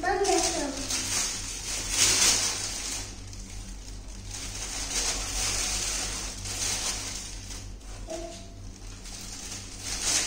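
A young child's voice trailing off in the first second, then steady hiss and a low electrical hum, with a short vocal sound about eight seconds in.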